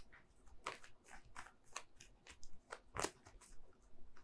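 Tarot cards being shuffled by hand: a faint run of irregular card clicks and snaps, the loudest about three seconds in.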